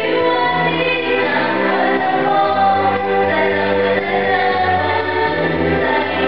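A woman singing live into a microphone over instrumental accompaniment, with held bass notes changing about once a second underneath the voice.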